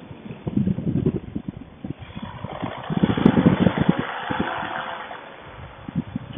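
Paramotor engine and wind heard through a noise-cancelling Bluetooth helmet microphone, thin and muffled: an irregular low rumble with uneven buffeting, and a faint steady hum from about two seconds in.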